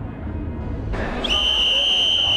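Outdoor background rumble, then about a second in a whoosh from a TV news graphic transition, followed by a steady, high, whistle-like tone held for about a second and a half.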